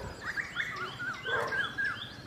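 Birds chirping: a run of quick up-and-down notes repeated over and over, mixed with short rising whistles.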